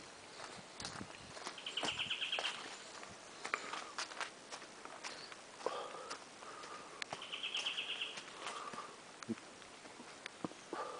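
Footsteps on a leaf-littered forest trail, with leaves and twigs crunching underfoot. Twice, about two seconds in and again about seven seconds in, an animal gives a short, rapid, high trill, with a few fainter calls in between.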